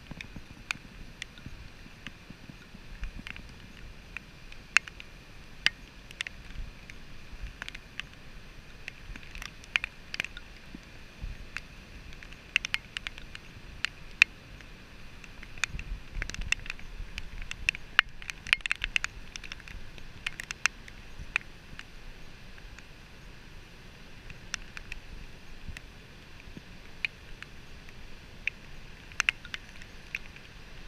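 Storm surf breaking on the beach as a steady wash, with many irregular sharp ticks of raindrops hitting the camera.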